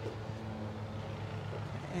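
Steady low mechanical hum with an even pitch.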